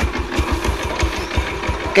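Yamaha Sirius 110cc single-cylinder four-stroke engine idling, a rapid even chugging with a rattly edge. Viewers liken it to a tractor engine, though it runs smoothly.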